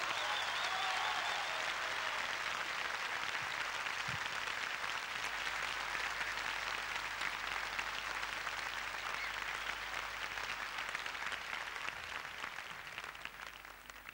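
Audience applauding, a dense clapping that thins out and fades away over the last couple of seconds.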